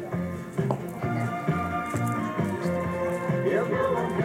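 Music with a steady bass beat.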